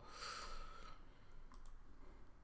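A brief soft hiss, then a few quiet computer-mouse clicks about a second and a half in.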